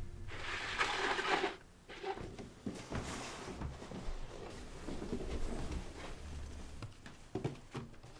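Cardboard shoebox being drawn across a wooden floor and handled: a rustling scrape lasting about a second near the start, then soft rustles and small clicks.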